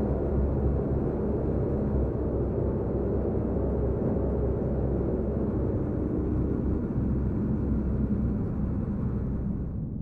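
A steady low rumble, even in level throughout, fading out near the end.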